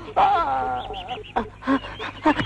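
A person's drawn-out, wavering cry lasting about a second, followed by a few short voice sounds.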